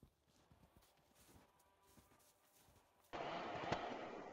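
Near silence with a few faint ticks, then an abrupt jump into steady outdoor background hiss with one sharp click shortly after.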